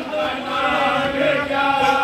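Male voices reciting a marsiya, an Urdu elegy of mourning, in a slow chanted melody with held notes.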